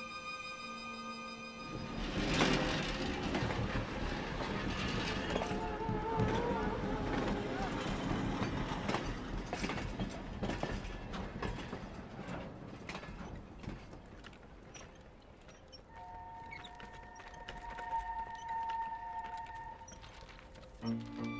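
Violin music gives way about two seconds in to the rumble and clatter of a passenger train, with people's voices calling out over it; the train noise fades after about ten seconds, and near the end two steady held tones sound.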